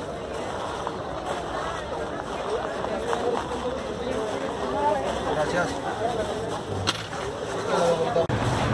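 Indistinct voices of people talking nearby, with a single short click about seven seconds in.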